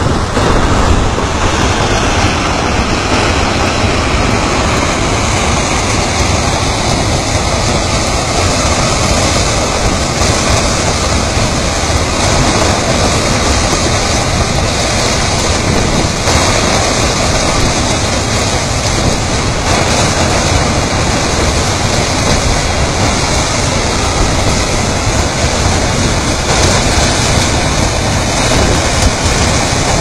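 Loud, steady rushing of a fast-flowing, muddy river, with no let-up or separate events.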